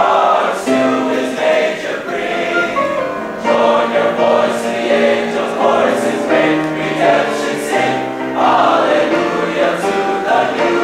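Men's high school choir singing in harmony, in long held chords.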